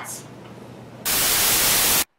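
Quiet room tone with a low hum, then about a second in a loud burst of even static hiss, like TV static, that cuts off abruptly.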